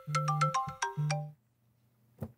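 Mobile phone ringtone: a quick run of bright electronic notes with a low buzz under parts of it, stopping about a second and a half in.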